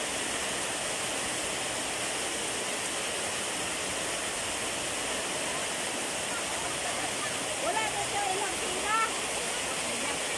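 Heavy tropical rain falling in a steady, even hiss. Near the end, a child's voice calls out briefly a couple of times.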